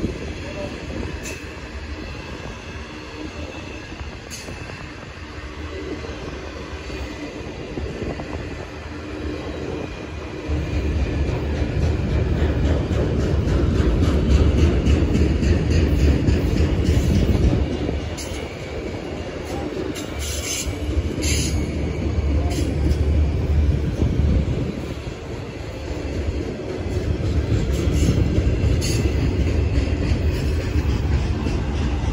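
A slow freight train of autorack cars rolling past with a continuous low rumble of steel wheels on rail. It swells louder about ten seconds in, eases off and builds again near the end. There is a brief burst of higher wheel noise around twenty seconds in.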